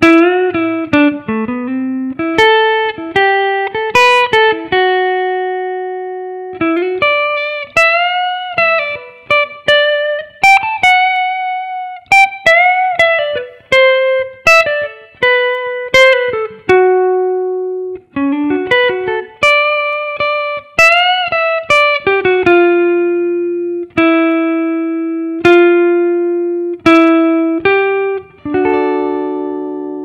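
Electric guitar playing a clean single-note lead line, built mostly on held notes on the chords' roots and thirds with a few added passing notes. Several notes are bent up in pitch, and a chord rings out near the end.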